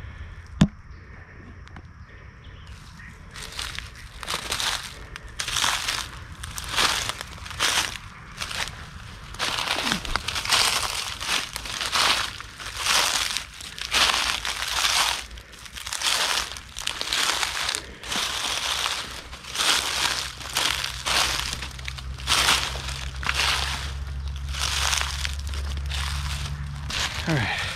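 Footsteps crunching through dry leaf litter on a forest floor at a steady walking pace, starting a few seconds in. A single sharp click comes just under a second in.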